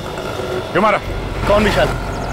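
Two short bursts of a voice, about a second apart, over a steady low rumble.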